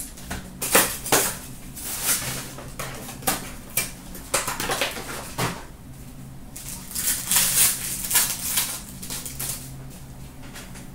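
Cardboard hockey card box being opened and its packs taken out and handled: repeated irregular rustling and crinkling of card stock and pack wrappers, busiest in the last few seconds, with a short low knock about halfway through. A low steady hum runs underneath.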